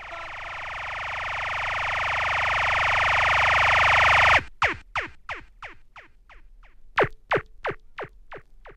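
Synthesized sound effects in a ragga jungle track. A wide noise swell rises steadily in level for about four seconds and cuts off suddenly, followed by a string of quick downward-sweeping laser-like zaps, about three a second.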